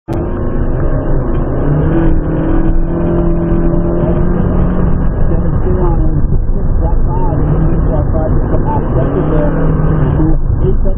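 Honda Fit's four-cylinder engine heard from inside the cabin, revving up hard off the start line in the first two seconds and then pulling at a steady pitch, over heavy road and tyre noise. About six seconds in the engine note drops as the car slows for a turn, then picks up again in short pulls.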